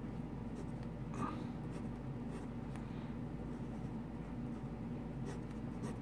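Pencil scratching on sketchbook paper in short drawing strokes, over a steady low background hum.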